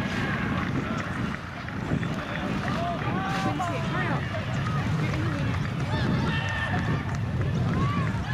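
Scattered, indistinct shouts and calls from players and spectators at a junior rugby league game, over a steady low rumble of wind on the microphone.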